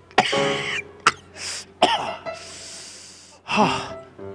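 A man acting out being choked by pepper: a strained cry, a sharp cough-like burst, then a long hissing breath and a short vocal sound near the end.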